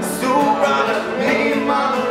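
Several men singing together, loud and informal, to a strummed acoustic guitar.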